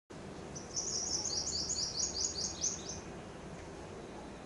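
A small songbird singing a quick run of high, clipped notes, about a dozen at roughly five a second, ending about three seconds in, over a steady low background hum.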